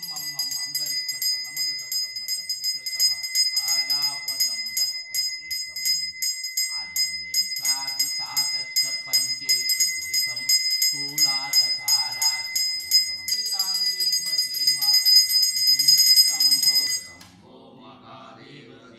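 A pooja hand bell rung continuously with rapid clapper strikes, its high ringing tones held steady, over a voice chanting mantras. The bell stops abruptly near the end.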